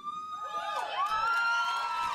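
Concert audience cheering and whooping as a song ends, many voices at once.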